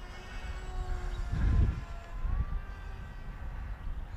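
Small electric motor and propeller of an RC flying wing heard overhead, a faint whine that climbs in pitch about halfway through as it is throttled up. A low rumble of wind on the microphone runs under it, swelling briefly about a second and a half in.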